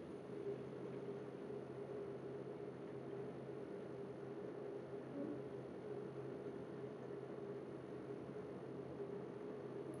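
Quiet room tone: a faint, steady hiss with a low hum underneath.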